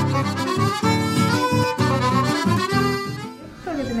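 Accordion-led music playing a melody, dropping in level shortly before the end.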